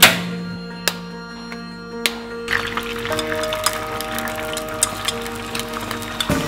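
A Sunhome ST-168 gas stove's igniter clicks three times, then there is a steady hiss from about two and a half seconds in, typical of the gas burner lighting. Soft background music with long held notes plays throughout.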